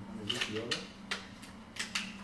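Several sharp clicks and taps of small objects being handled on a tabletop, over a steady low hum.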